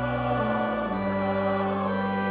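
Congregation and choir singing a hymn to pipe organ accompaniment, held chords stepping downward from one to the next.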